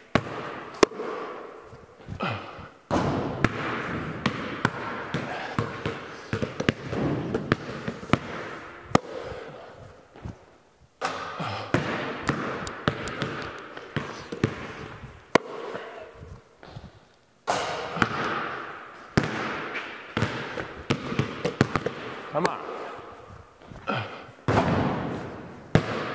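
Basketballs bouncing on a concrete floor as they are dribbled and shot, a run of irregular sharp thuds, each with a long echo off the bare steel walls of a large empty barn.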